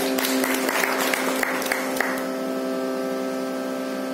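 Brief scattered applause for about the first two seconds as the concert piece ends, over a steady hum that carries on throughout.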